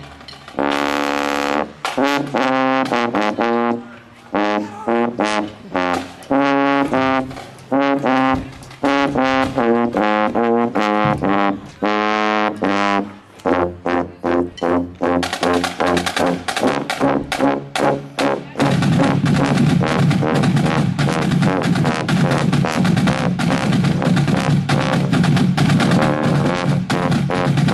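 Marching tubas playing a tune outdoors. The first part is a string of short, separated low brass notes with gaps between phrases. From about two thirds of the way in, the playing turns denser and continuous, with a fuller low end.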